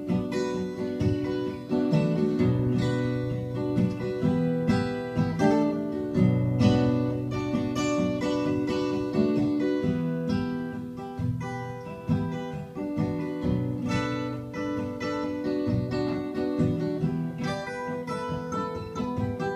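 Acoustic guitar played live as an instrumental break with no singing: a steady run of picked and strummed chords with frequent sharp note attacks.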